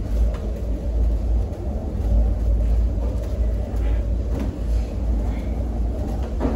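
Steady low outdoor rumble, with a few faint clicks.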